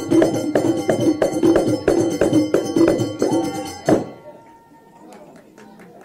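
Hdakka ensemble of hand drums struck in a fast even beat, about three strokes a second, under men chanting together. The music stops on a last loud stroke about four seconds in, leaving faint clinks.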